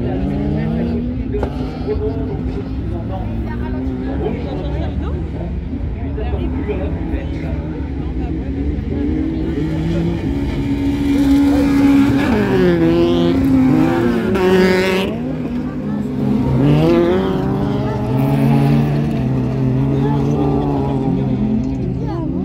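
Race car engines on a dirt autocross track, revving up and down as the cars brake for the corner and accelerate out of it. The engines are loudest about halfway through, as a hatchback race car passes close by, and there is a second rise a few seconds later.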